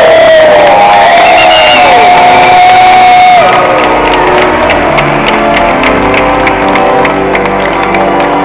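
Wedding guests cheering with long, drawn-out whoops for about three and a half seconds, then clapping in a steady beat of about three claps a second, with music underneath.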